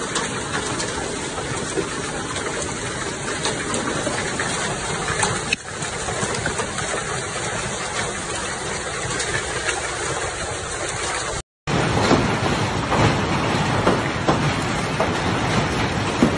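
Hail and rain falling in a steady hiss, with scattered sharp ticks of hailstones striking. The sound cuts out for a moment about eleven seconds in and comes back with the ticks more distinct.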